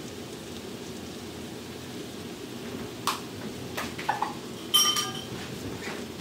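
Melted butter and spices sizzling gently in a stainless steel frying pan. A few light clicks come about three to four seconds in, then a single ringing metallic clink about five seconds in.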